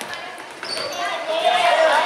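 Basketball game in a gym: a ball bouncing on the hardwood floor and spectators' voices, with the shouting growing louder in the second half.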